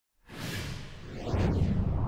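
Logo-reveal whoosh sound effect: a rushing swoosh with a sweeping, phasing hiss that swells into a deep rumble, loudest near the end.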